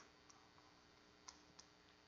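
Near silence with a few faint clicks of chalk tapping on a blackboard as an equation is written.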